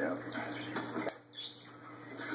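Small metal bell and its chain on a parrot cage clinking as the parrot plays with it, with television speech over it in the first second.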